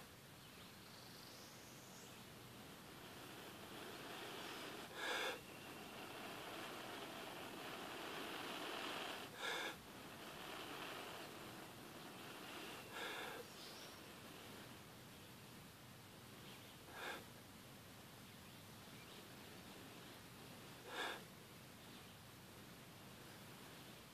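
Long, soft breaths blown into a smouldering char-cloth ember inside a jute-rope tinder bundle to coax it into flame, with a short, sharp breath about every four seconds.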